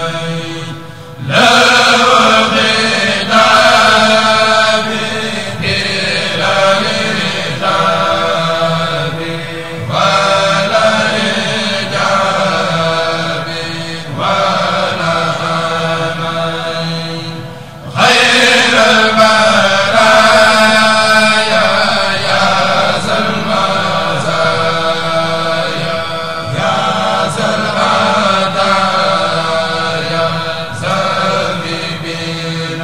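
A group of men chanting a Mouride khassida in unison through microphones, in long drawn-out phrases, with a brief break about a second in and another at about 18 seconds.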